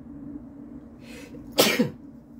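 A man coughing once near the end, a short harsh burst that he puts down to allergies.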